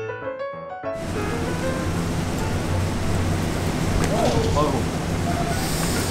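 Piano background music that cuts off about a second in, giving way to a steady noisy room hum with faint voices in it.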